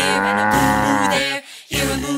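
A long cartoon cow moo that drops in pitch at its end, then a short break and a second moo starting near the end, over children's song backing music.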